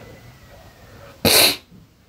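A single loud sneeze a little over a second in, short and sharp.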